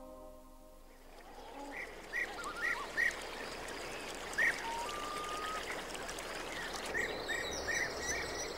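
Birds chirping over the steady rush of running water: short chirps in small runs, and one brief held whistle in the middle.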